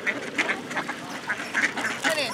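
A flock of mallard ducks quacking, many short calls overlapping one after another as they crowd in to be fed.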